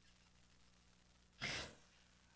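Near silence, then about one and a half seconds in a single short, breathy exhale from a laughing person, a sigh-like breath out.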